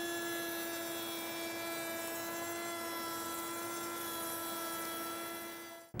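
Table-mounted router spinning a rabbeting bit at steady speed, a steady high-pitched whine, while a plywood workpiece is fed along the fence to cut a rabbet; the sound fades out just before the end.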